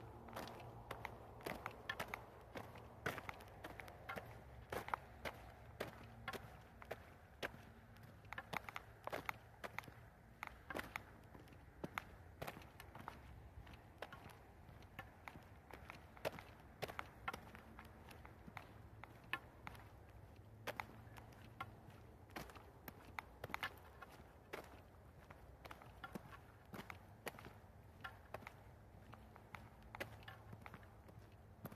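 Footsteps of a person walking outdoors, a faint, irregular run of short steps about one or two a second over a low steady hum.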